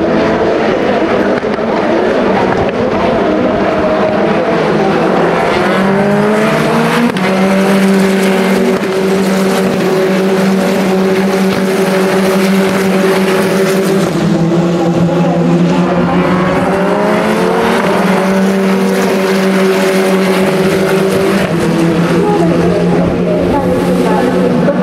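Formula Regional single-seater race car engines running hard on the circuit, with a loud, steady engine note that climbs in pitch twice, about six and sixteen seconds in.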